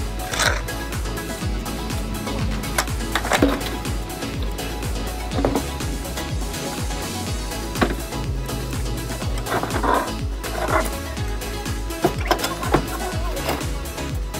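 Background music with a steady bass line, over a few scattered knocks and clatters from wooden debris being handled and loaded.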